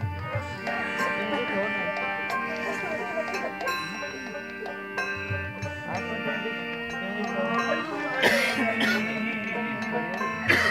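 Live devotional kirtan music: many held instrumental tones under a wavering melody line, with occasional low drum strokes and a bright cymbal crash about eight seconds in.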